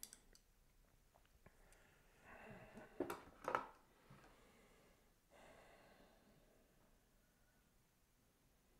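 Near-silent room tone with two faint, sharp clicks about three seconds in and soft breath-like sounds around them.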